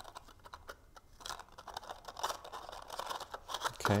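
Cardstock paper being pinched and pressed by fingers as a glued tab is closed: faint, irregular little clicks and scratchy rustles.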